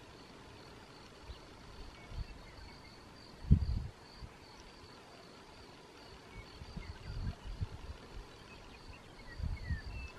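A steady, high-pitched chorus of insects, with a few faint short bird chirps over it. Low rumbles on the microphone come and go, the loudest about three and a half seconds in.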